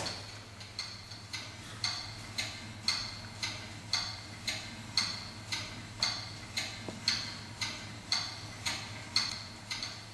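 Steady, even ticking like a clock, about two ticks a second, with one louder click at the very start.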